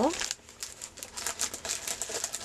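Clear plastic bags of small silk ribbon roses crinkling as they are handled and set down, a quick run of small crackles.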